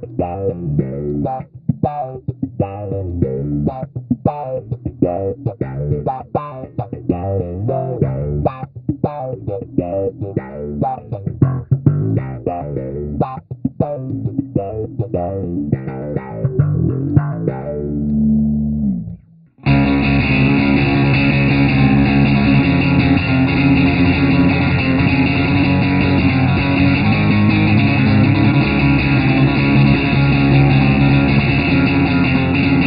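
Electric bass guitar played through a Bass PODxt multi-effects processor, its effects being demonstrated. For about nineteen seconds it plays a run of plucked notes with sharp attacks, then a held note that slides down in pitch. After a brief break it switches to a dense, continuous effected tone.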